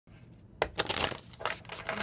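Deck of oracle cards handled and shuffled in the hands: a quick run of sharp card clicks and slaps, starting about half a second in.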